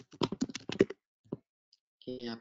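Fast typing on a computer keyboard: a quick run of keystrokes that stops a little under a second in, followed by one last key press.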